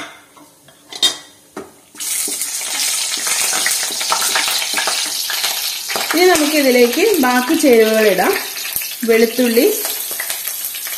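Whole spices frying in hot oil in a nonstick wok: a few sharp clicks in the first two seconds, then a loud, steady sizzle that starts suddenly about two seconds in and carries on to the end.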